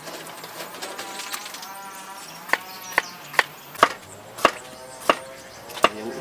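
Background music with a series of about seven sharp knocks in the second half, spaced roughly half a second apart, each with a brief ring.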